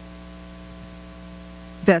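Steady electrical mains hum on the microphone line, a low buzz with a stack of overtones that holds level throughout. A woman's voice starts a word near the end.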